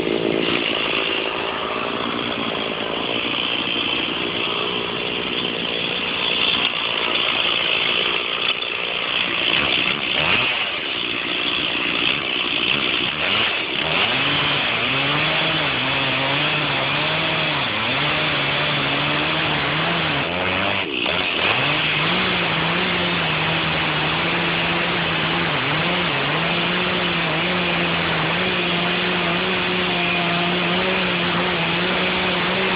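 Stihl two-stroke chainsaw running hard while cutting into an oak, with no break. Its engine pitch dips and recovers again and again as the chain loads in the cut during the middle stretch, then holds fairly steady for the last several seconds.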